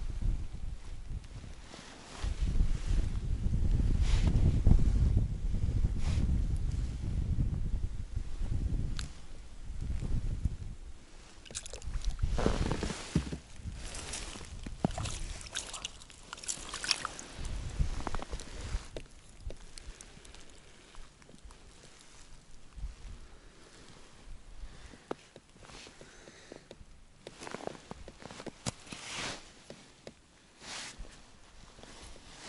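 Gusting wind buffets the microphone for several seconds early on with a loud, rough low rumble. It then eases into scattered crunches and knocks of snow and ice being handled at the fishing hole.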